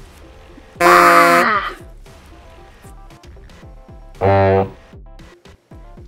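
Two short voiced shouts, like play-fight grunts, over faint background music: one about a second in, the other near four seconds in.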